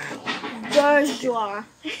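A person laughing: a breathy start, then two drawn-out voiced laughs.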